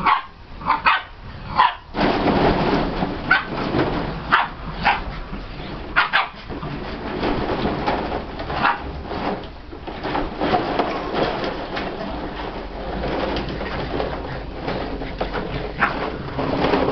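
Collie puppies at play, giving short yips and little barks at irregular moments, over a continuous rustling noise.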